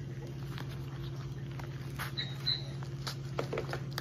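Scissors working at a package, a scatter of small snips, clicks and rustles as the blades struggle to cut. A steady low hum runs underneath.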